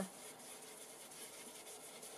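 Faint rubbing of a sponge ink applicator worked along the edge of a paper tag.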